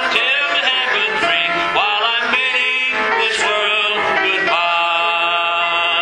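A gospel song, sung with musical accompaniment. The voice glides between notes and holds long notes in the second half.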